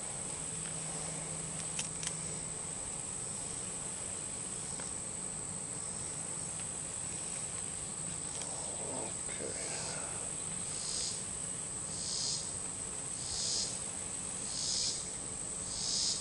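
Insect chorus outdoors in summer: a steady, high-pitched buzz. About ten seconds in, a rhythmic pulsing joins it, repeating roughly every second and a bit.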